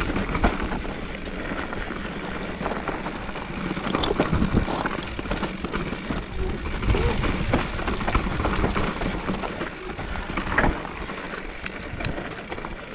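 Mountain bike descending a rocky dirt trail: tyres crunching over loose stones while the bike rattles and clatters over bumps, with many short knocks over a steady low rumble.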